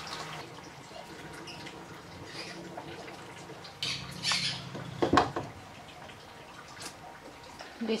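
A knife cutting sausage against a wooden cutting board: a few short, sudden cuts about four and five seconds in, over a quiet room.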